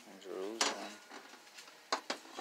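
Glazed ceramic ashtrays handled on a shelf: a light knock partway through and a sharp clack near the end as one is set against the others. Before that there is a short wordless vocal murmur.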